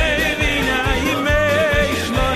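A song: a singer's voice held with strong vibrato over instrumental accompaniment with a steady bass beat.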